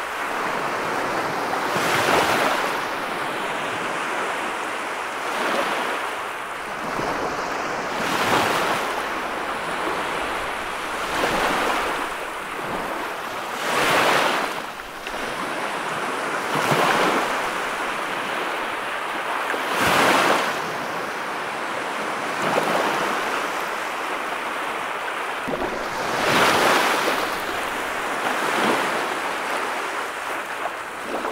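Ocean surf breaking and washing up a sandy beach, the roar of foam swelling and falling every few seconds as each wave comes in.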